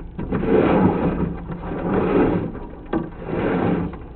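Drain-inspection camera on its push rod being fed into a pipe: three swells of sliding, scraping noise about a second each, over a steady low hum.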